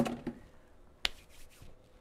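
A woman clearing her throat, then quiet broken by a single sharp hand clap about a second in.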